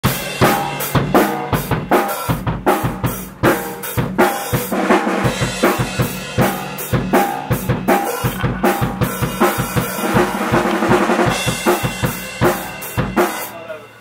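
A drum kit playing a steady beat, loud, with other instruments faint beneath it; it stops shortly before the end.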